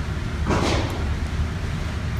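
Steady low rumble of an indoor shooting range's background noise, with a short rushing noise about half a second in.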